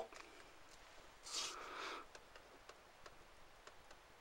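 Quiet handling of paper and a ballpoint pen: a short rustle about a second in, then faint scattered ticks as the pen is brought to the sheet.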